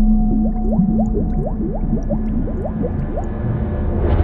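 Title-sequence sound effects: a deep, steady drone with a quick run of rising underwater bubble bloops, about three a second, and a swell right at the end.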